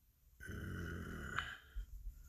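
A man's brief, rough throat sound, about a second long, starting about half a second in.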